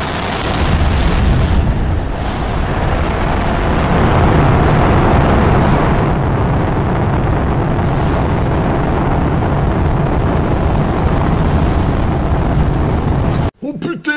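Rocket launch: the engines run at liftoff as a loud, steady noise with a heavy low rumble, starting suddenly and cutting off abruptly near the end.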